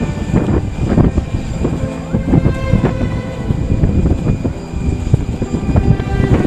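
Boeing 747-400 jet engines (Rolls-Royce RB211) running at taxi power, with a rough, gusting rumble of wind on the microphone.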